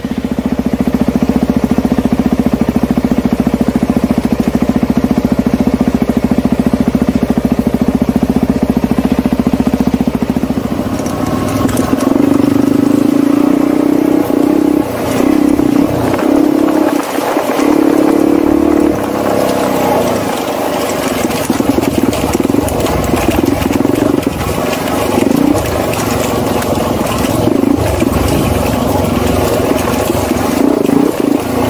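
Suzuki DRZ400E single-cylinder four-stroke dirt bike with an FMF Powercore 4 exhaust, heard from the rider's helmet. The engine note holds steady for about the first ten seconds, then the revs rise and fall with the throttle on a rough dirt single track, with knocks as the bike goes over bumps.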